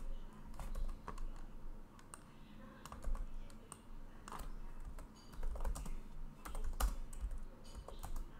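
Typing on a computer keyboard: irregular key clicks in short runs, with soft low thumps from the keystrokes.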